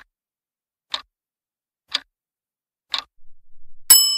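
Countdown timer sound effect: a clock ticking once a second, a short soft rattle, then a bright bell ding near the end with several clear ringing tones that keep sounding, signalling that time is up.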